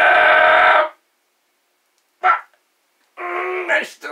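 A man's strained cry of pain, held for almost a second, then a short grunt about two seconds in and a longer groan near the end, as he presses a hot soldering iron through his fingernail.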